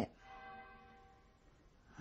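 A single faint stroke of a bell, its several tones fading away over about a second and a half.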